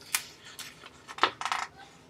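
Pages of a paperback picture book being handled and turned: a few short, crisp paper rustles and taps, the loudest about a second in.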